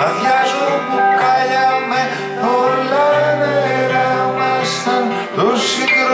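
Live song: a man singing over strummed acoustic guitar and a digital keyboard.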